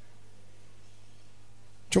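A pause in a man's speech with only a steady low electrical hum from the microphone and sound system. Speech comes back sharply near the end.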